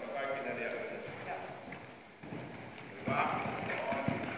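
A horse's hoofbeats on soft arena footing, in the three-beat rhythm of a canter, growing clearer from about halfway through. A person's voice is heard talking over them.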